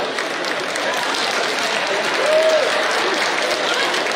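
A large audience applauding, a dense steady clapping that runs without a break.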